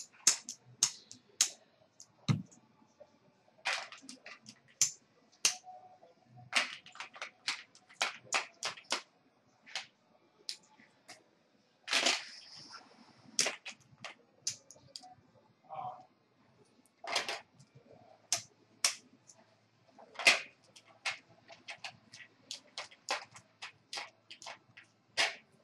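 Poker chips clacking against one another as a dealer stacks and sorts them on the table: sharp, irregular clicks, several a second, with one longer rattle just after the midpoint.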